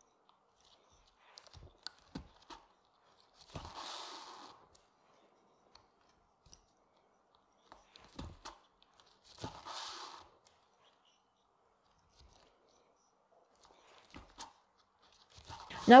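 Hand saddle-stitching leather: small clicks of needles going through the stitching holes of a leather belt, and twice, about six seconds apart, the thread drawn tight through the leather in a soft rustling pull lasting about a second.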